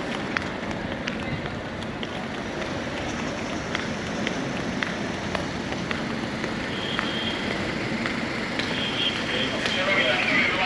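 Footsteps on pavement at a walking pace, about three steps every two seconds, over a steady outdoor background hum.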